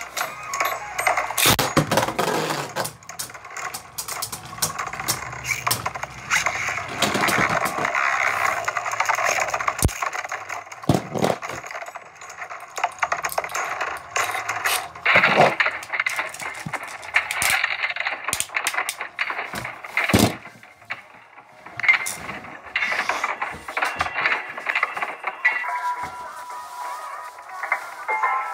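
Beyblade spinning tops whirring on a plastic stadium floor and clashing, with many sharp clacks as their plastic and metal parts strike each other.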